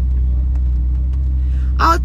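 Steady low drone of a car heard inside its cabin, the engine and running gear humming evenly. A woman's voice cuts in near the end.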